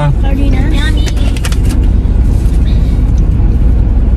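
Steady low rumble inside a car cabin with the vehicle running, with faint voices and a few light clicks in the first second and a half.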